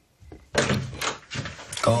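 A door banging open and being shoved, a loud sudden thud about half a second in followed by a few more sharp knocks.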